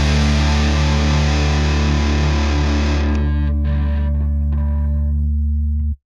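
The closing chord of a punk rock song: a distorted electric guitar chord with heavy low end, held and left ringing after the drums stop. Its treble fades after about three seconds, and it cuts off abruptly near the end.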